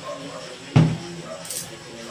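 A single dull thump about three quarters of a second in, dying away quickly.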